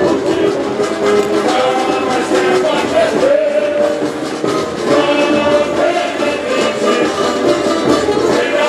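Samba school parade music: a sung samba-enredo melody carried over a dense, steady samba percussion beat, loud throughout.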